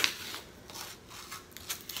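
Plastic seal around the lid of a pint of ice cream being torn and peeled off: a sharp snap at the start, then a run of short crinkles and clicks.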